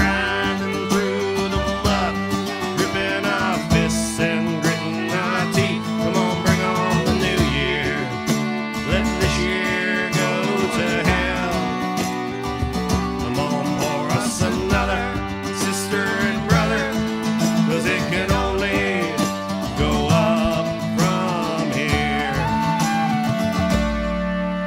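Live acoustic Irish-Americana band music: a strummed twelve-string acoustic guitar and a bodhrán carry the song with a melody line over them, at a steady level.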